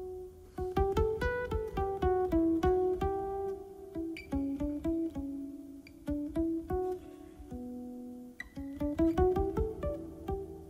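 Solo guitar playing a slow, free melody of single plucked notes that ring on, pausing briefly twice.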